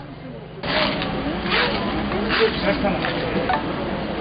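Street ambience from the scene of a crash: people talking in the background, with close rustling and scraping noises as paramedics handle the injured rider. It starts about half a second in, after a short quiet gap.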